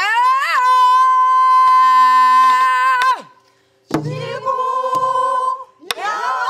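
A woman singing in Korean Namdo folk-song style: she slides up into one long held note lasting about three seconds. After a short pause there is a sharp stroke on the buk drum, then more singing, and another stroke near the end.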